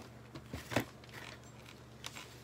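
A few short clicks and knocks from hands working at a box and its packaging, the loudest about three quarters of a second in.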